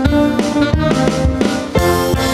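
Live band of acoustic guitar, keyboard and drums playing the instrumental ending of a pop song, with an accented hit near the end landing on a held final chord that rings out.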